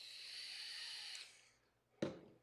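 A person taking a long draw on a vape: a faint airy hiss of breath pulled through the device, lasting just over a second and then stopping.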